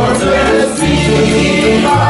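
Live acoustic folk band playing, with fiddles, guitars and an upright bass keeping a steady bass line, and several voices singing together.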